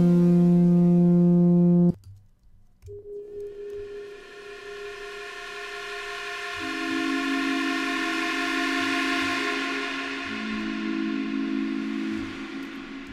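Sylenth1 software synthesizer auditioning presets: a loud held chord from a trumpet-style lead preset cuts off about two seconds in. After a brief gap, a dark pad preset fades in slowly, notes stacking one by one into a swelling, airy chord.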